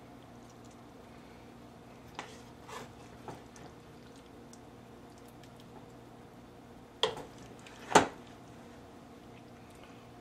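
A spoon scooping a chicken filling out of a cast iron skillet and onto a tortilla: a few soft scrapes and knocks, then two sharper knocks about a second apart later on.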